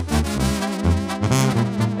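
Mexican banda music: a brass section of trombones and trumpets plays an instrumental phrase between sung verses, over a rhythmic, pulsing bass line.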